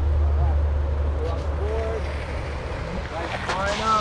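Low rumble of longboard wheels rolling on an asphalt path, fading away over the first two seconds as the riders slow to a stop.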